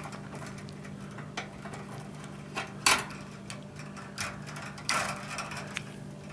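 Electrical wires being handled and a plastic wire nut twisted off a splice: small scattered clicks and ticks, the sharpest about three and five seconds in.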